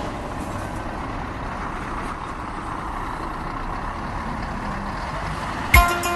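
Steady, even outdoor background rush, like distant traffic. About half a second before the end, plucked guitar music starts in loudly.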